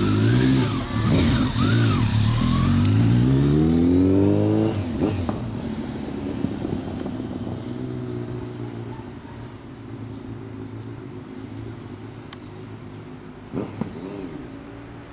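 Kawasaki ZRX1200 DAEG inline-four with a BEET aftermarket full exhaust, blipped a couple of times and then accelerating away, its pitch rising steadily for about three seconds. The sound then drops off sharply and continues as a quieter, steady engine note that fades as the bike rides off.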